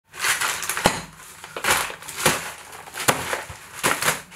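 Grey plastic courier mailer bags crinkling and rustling as they are handled and shifted on a table, in uneven bursts with several sharp clicks.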